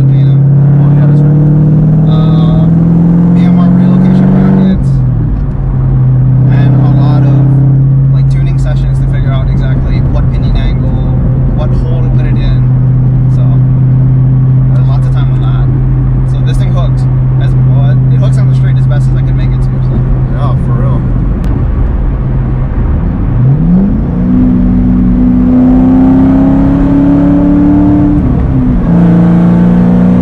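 Supercharged 2007 Ford Mustang GT's 4.6-litre V8 under way: it climbs in pitch under acceleration, drops at a gear change about five seconds in, holds a steady cruise for most of the time, then pulls hard up through another gear near the end.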